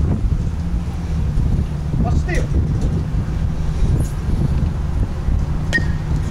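Wind rumbling steadily on the camcorder's microphone at an outdoor youth baseball game, with faint calls from the field about two seconds in and near the end.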